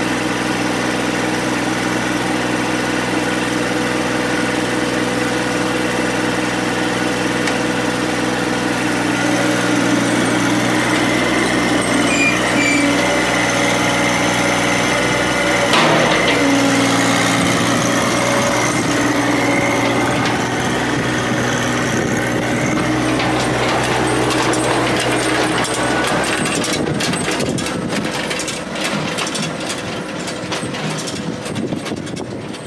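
Green compact tractor with front loader running steadily, its engine note shifting a couple of times as it works. Near the end the engine fades and gives way to rattling and clattering as the tractor drives off.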